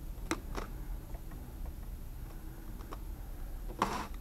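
A few soft clicks and handling noises from a hand moving around a small oscilloscope fitted with a ferrocell, the loudest a short crackly click near the end, over a steady low hum and a faint high whine.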